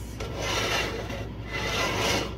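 Two rubbing swishes, about a second each, as a hand brushes against or right by the phone's microphone. A steady low hum sits underneath.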